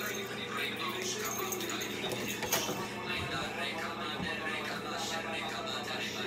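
Indistinct background voice with music, over a steady low electrical hum, with a few faint clicks.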